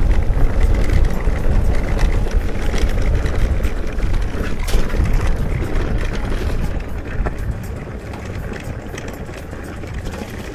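Wind buffeting an action camera's microphone as an e-mountain bike rides over a rough trail, with tyre rumble and the bike rattling and clicking over stones. It eases off and gets duller about seven seconds in.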